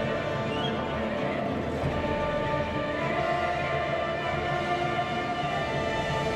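Choir and orchestra performing classical music, holding sustained chords.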